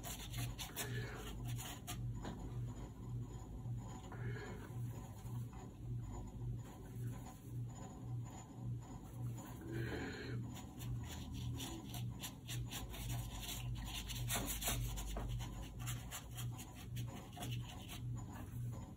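Watercolour brush scrubbing and dabbing on rough watercolour paper and working paint in the palette: a run of short, faint, dry scratchy strokes.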